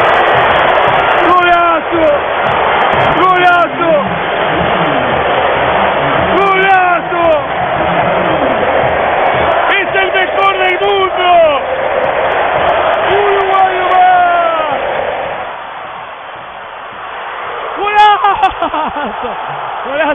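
Football stadium crowd cheering in a dense, steady din, with voices shouting over it at intervals. The crowd noise fades about three-quarters of the way through, then loud shouts break out again near the end.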